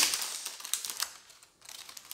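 Plastic cookie wrapper and tray crinkling and clicking as a cookie sleeve is opened. It is loudest at the start and fades, with a few sharp clicks.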